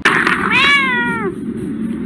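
A single cat meow about half a second in, lasting under a second, its pitch rising slightly and then falling, over a low rumble.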